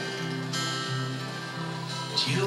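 Solo acoustic guitar strummed in a steady rhythm, chords ringing with a low bass note re-struck at an even pace.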